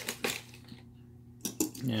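A few short, hard plastic clicks and taps from a Matchbox Top Gun toy aircraft carrier's plastic elevator and deck parts being handled: a cluster at the start and two more about a second and a half in.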